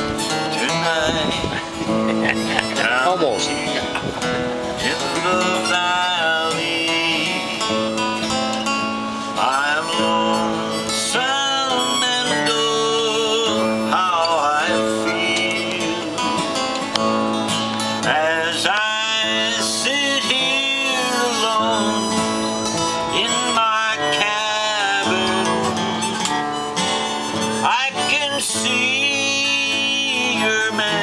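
Harmonica playing an instrumental lead break over strummed acoustic guitar, its notes bending and wavering.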